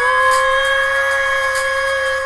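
A singer's voice slides up into one long held high note over the song's backing music.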